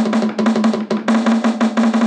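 Portable electronic roll-up drum pad struck rapidly with drumsticks in a drum roll, its electronic drum sound holding one steady pitch under the fast, slightly uneven hits. A crappy drum roll.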